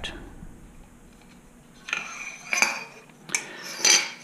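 Metal motorcycle fork parts (the DR-Z400 slider tube and damping rod) being handled on a workbench. After a quiet start there are several short metallic clinks and scrapes, from about two seconds in to the end.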